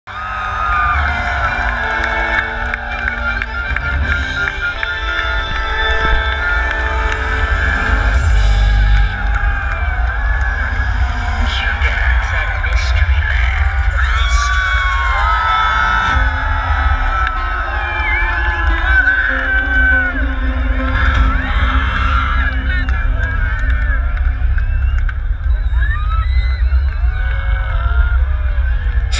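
Loud electronic dance music with heavy, continuous bass played over a large outdoor festival sound system, with a crowd shouting and whooping over it.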